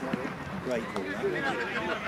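Men's voices calling out at an outdoor football match, quieter than the shouting around it and overlapping, one of them saying "great".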